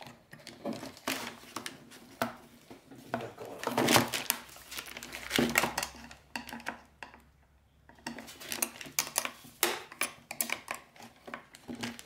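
Irregular clicks and clinks of small metal hardware against a hard plastic cover as nuts are fitted and tightened onto mounting bolts by hand, with a quiet pause midway.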